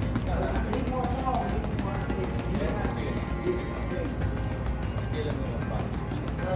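Boxing gloves striking a heavy bag in quick combinations, a run of rapid thuds, over background music with a voice.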